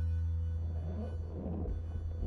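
Quiet instrumental music: a held keyboard chord over a deep steady low tone, slowly dying away. Faint, soft, irregular noises come in from about the middle.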